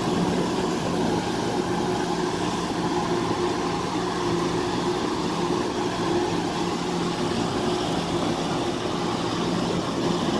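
Tractor's diesel engine running steadily as it pulls a loaded trailer through wet paddy mud, a constant low note.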